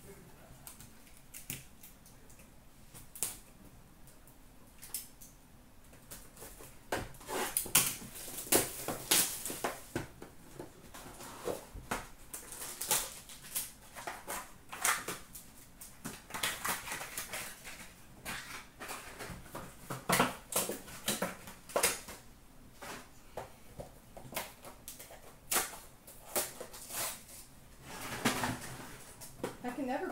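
Hands handling and opening trading-card packaging: crinkling wrappers and cardboard, with many sharp clicks and rustles. It is sparse for the first several seconds, then busier and louder from about seven seconds in.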